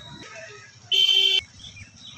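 A vehicle horn honking once, a single steady tone of about half a second with a sharp start and stop.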